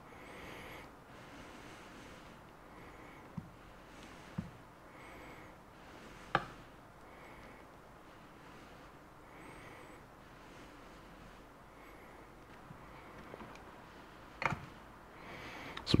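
Quiet handwork with a plastic welding iron and filler rod on a plastic bumper: low background hiss with a few small knocks and clicks, the sharpest about six seconds in and another near the end.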